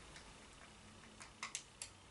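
Faint room tone with a few light plastic clicks starting about a second in, from a clear plastic Essence highlighter compact being handled.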